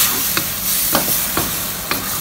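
Pork mince and vegetables sizzling in a steel wok, with a wooden spatula scraping and knocking against the pan about every half second.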